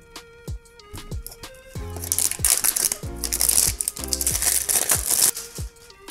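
Background music with a steady beat. About two seconds in, the plastic shrink-wrap on a phone box crinkles for around three seconds as it is cut and pulled off.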